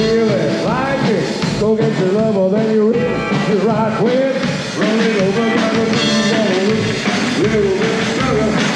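A live rock and roll band playing: electric guitar, upright double bass and drum kit, with a man singing into the microphone.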